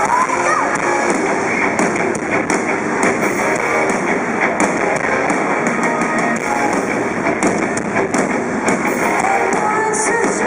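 Live rock band playing loudly in an arena: electric guitars, bass and drums in a continuous full-band wash, heard from within the crowd.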